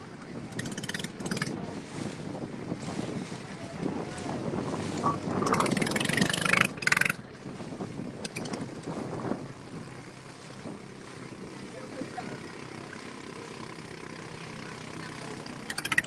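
Small river tour boat's engine running steadily as the boat moves along, with a louder, noisier stretch about five to seven seconds in.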